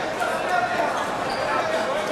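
Voices calling out in a large, echoing sports hall, with a few short knocks or thuds among them.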